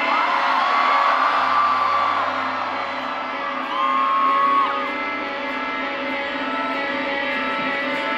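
Live rock band's instrumental intro: electric guitars through Marshall amps hold a sustained, ringing chord. Two long whoops rise over it, about a second in and again about four seconds in.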